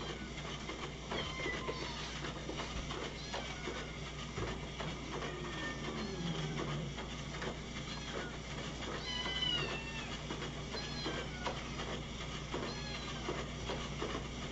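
Many domestic cats meowing over and over, separate calls overlapping one another, as they clamour to be fed. A steady low hum runs underneath.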